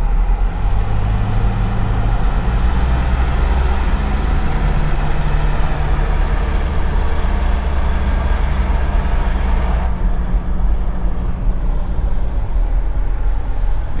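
Car towing a caravan, heard from inside the cab while driving through town: a steady engine drone under constant road and tyre noise. The engine note shifts slightly with speed, and the higher hiss drops away about ten seconds in.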